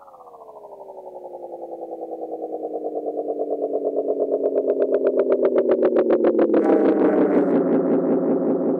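Electronic music: a pitched synthesizer tone slides slowly downward, pulsing rapidly and swelling louder. About two-thirds through, a brighter, hissier layer joins it.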